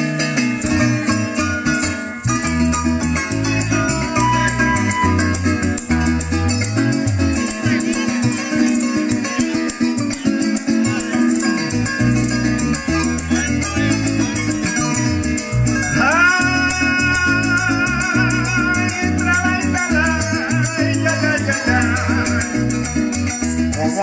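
Live Colombian llanera music: a llanera harp leads over electric bass, cuatro and maracas, which keep a fast, steady beat. About two-thirds of the way through, a long, wavering high note comes in over the band.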